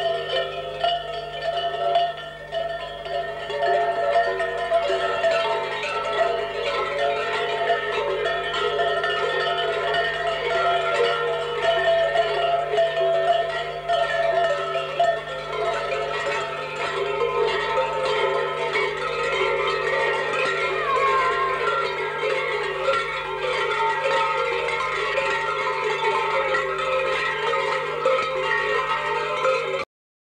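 Many large metal bells worn on survakari mummers' costumes clanging and jangling together continuously as the mummers move.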